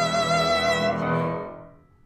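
A female singer holding a long note over an accompaniment with strings and piano. The note ends about a second in and the accompaniment dies away.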